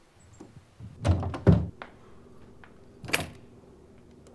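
A cabin door shutting, with two heavy thuds about a second in, followed near the end by a single sharp click.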